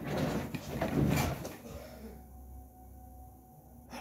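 Rustling and soft bumps of a person moving about and settling into an upholstered desk chair, loudest in the first second and a half, then only a low steady room hum.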